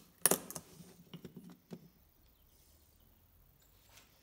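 A screwdriver prying wooden plugs out of a plug-cut offcut: a sharp snap about a quarter second in, then a few lighter clicks of wood on wood over the next second and a half.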